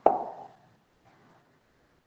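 A single short knock at the very start, dying away within about half a second, followed by near silence.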